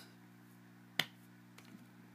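A single finger snap about a second in, over a faint steady low hum.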